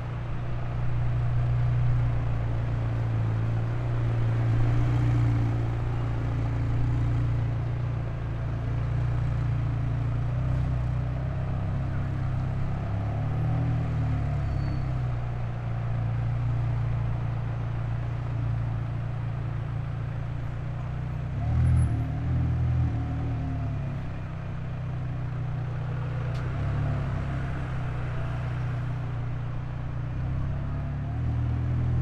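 McLaren 720S twin-turbo V8 running at low revs while the car creeps along in traffic. The low engine note is steady, with a brief swell about two-thirds of the way in.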